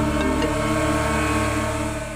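Background score music of sustained held notes over a deep low drone, dipping slightly near the end.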